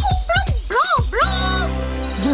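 High-pitched, cartoon-style puppet voice exclaiming with swooping pitch over background music. About a second in, a low steady hum comes in underneath.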